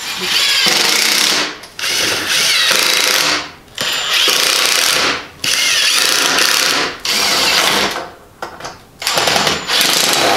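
Ryobi cordless driver driving 2-inch drywall screws up into the wooden cable-spool tabletop, in a series of runs of a second or so each with short pauses between.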